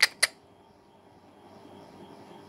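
Two sharp clicks at the start, a quarter of a second apart, then only a quiet steady hum of room tone.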